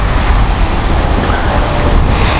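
Loud, steady rumble of wind buffeting the microphone, over the noise of street traffic.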